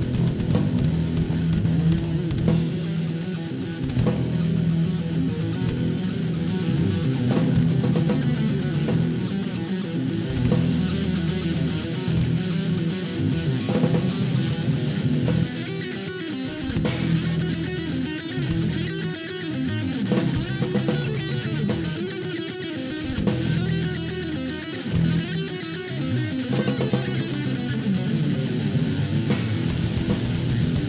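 Instrumental heavy rock played live by a guitar, bass and drums trio: electric guitar and electric bass over a drum kit, loud and continuous.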